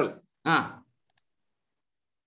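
Two brief syllables of a voice over a video call, then a faint click and dead silence, with no background noise at all.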